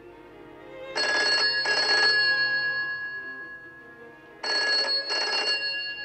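A telephone bell ringing in a double-ring pattern: two short rings close together, a pause, then another pair about three and a half seconds later, over soft background music.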